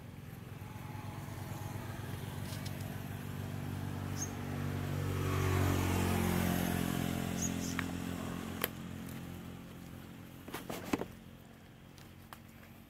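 A motor vehicle engine passing by: its hum grows louder, peaks about halfway with the pitch dropping as it passes, and then fades away. A few sharp clicks follow near the end.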